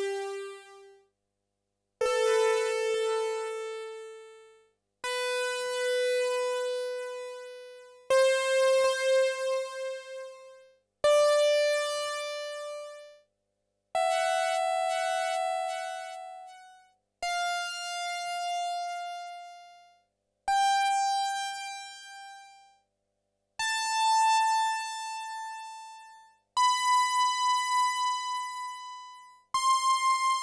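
Yamaha CS-80 analogue polyphonic synthesizer playing single notes up the white keys, one about every three seconds. Each note starts with a slight click, is held about two seconds and fades to silence before the next, a step higher in pitch. The notes are spaced this way so a sample recorder can split and multisample them.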